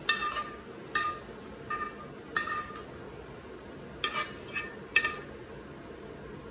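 Metal spoon clinking against a frying pan as sauce is spooned out: several short, ringing clinks spaced irregularly.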